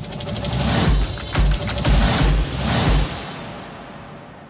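Short programme transition sting: swelling music with about five heavy bass hits, fading out near the end.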